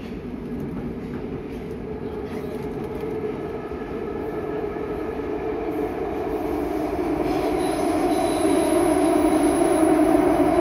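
Nagoya Municipal Subway 2000 series train running through the tunnel, heard from inside the car: a steady rumble that grows gradually louder, with high, steady tones coming in near the end.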